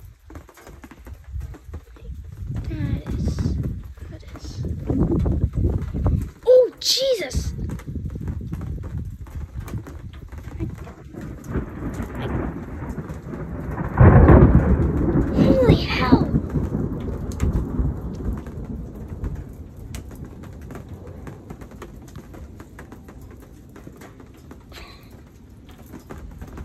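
Close thunder with rain falling. A low rolling rumble builds over the first few seconds. About fourteen seconds in comes a sudden loud crack that rumbles away over several seconds.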